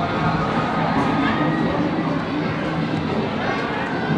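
Busy arcade ambience: unclear voices and background chatter mixed with machine music and jingles, at a steady level with no single sound standing out.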